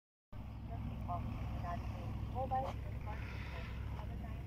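Outdoor background noise: a steady low rumble with faint, short chirping calls scattered over it.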